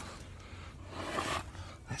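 A man's heavy, effortful breath, a breathy burst lasting about half a second roughly a second in, while climbing a steep slope, with a click of phone handling at the start.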